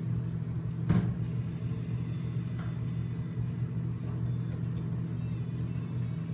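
Steady electrical hum of a microwave oven running, with a single knock about a second in.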